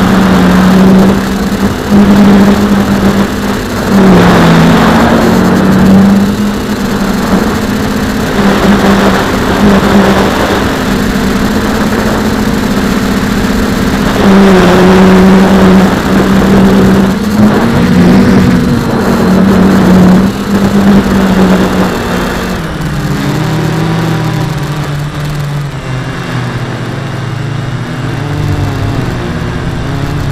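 RC Logger Eye One Xtreme quadcopter's electric motors and propellers buzzing in flight, heard from on board: a steady hum that wavers in pitch with throttle, with several rushes of wind noise, and drops to a lower pitch about two-thirds of the way through.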